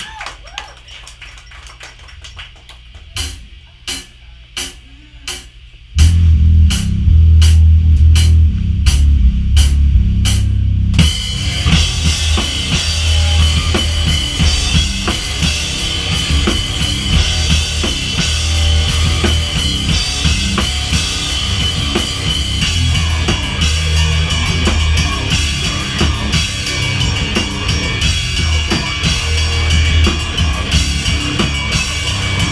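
A live rock band starts a song. About three seconds in, sharp ticks come about twice a second. A few seconds later a loud, low, held guitar or bass sound joins under them. About eleven seconds in, the full band comes in, with drum kit, cymbals and electric guitars, and plays on loudly.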